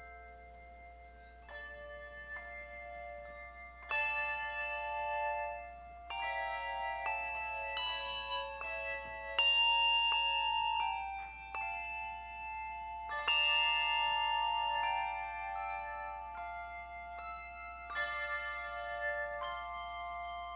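A handbell choir playing a slow piece: chords of several bells are struck every few seconds and each rings on and overlaps the next. It builds to its loudest about halfway through.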